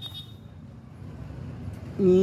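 Low, steady background rumble with no distinct events.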